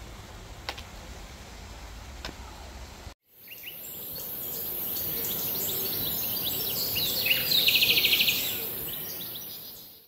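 Faint outdoor ambience with a low rumble and a couple of soft clicks. After a sudden cut about three seconds in, birdsong fades in: many short chirps and a rapid trill near the end, over a steady high hiss.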